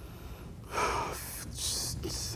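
A man draws an audible breath and lets out a breathy sigh, hesitating over a question.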